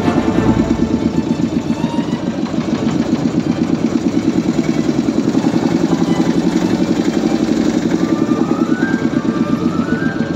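Boat engine running steadily with a rapid, even pulse, with music playing over it.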